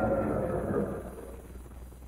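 Car sound effect: an engine running as the car slows, its pitch dropping slightly, then dying away about a second in to a quiet low hum.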